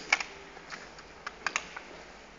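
An irregular series of sharp clicks and taps, about seven in two seconds, the loudest right at the start, as hands handle parts at a fiber optic fusion splicer.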